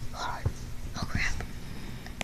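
Hushed whispering, breathy and without voiced tone, with a few faint soft knocks.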